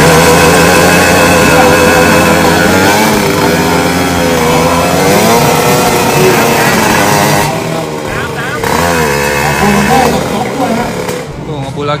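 Drag-racing motorcycle engines revving at the start line, the pitch rising and falling as the throttles are blipped.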